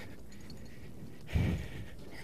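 A man's single heavy breath out, about a second and a half in, over faint steady background noise: he is winded from exertion in about 80 pounds of firefighter gear.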